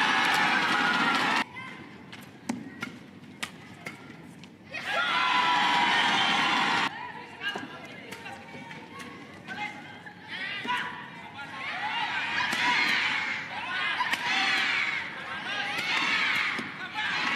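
Badminton play in an arena crowd: sharp racket strikes on the shuttlecock come at a quick, irregular rhythm during the rallies. Between them the crowd shouts and cheers loudly, a burst at the start, another about five seconds in, and a rising din through the second half.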